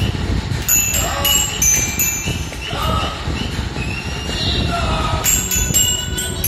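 Children's toy xylophone struck in scattered ringing metallic notes, in clusters about a second in and again near the end, over a steady low rumble.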